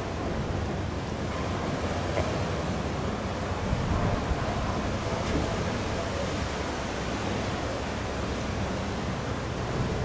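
Steady wind blowing across the microphone over the wash of ocean surf, with no distinct events.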